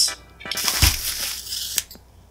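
Handling noise from unpacking a Rode PSA1 boom arm and its mount: rustling and knocking, with a thump about a second in and a sharp click near the end.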